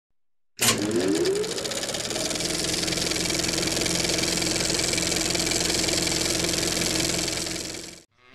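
Film projector sound effect: the machine starts abruptly and winds up with a rising whine, then runs steadily with a rapid mechanical rattle, fading out near the end.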